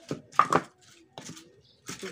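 Pestle knocking against a cobek mortar while chillies are ground for sambal: a few sharp knocks in the first half second, then it goes quiet.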